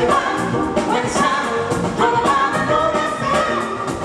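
Live funk and soul band playing, with singing over a steady beat.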